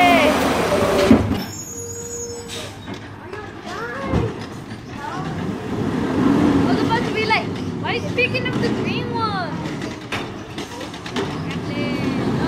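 Automated side-loader garbage truck working a pickup: its engine running steadily while the hydraulic arm lifts and tips a cart, with a sharp knock about a second in.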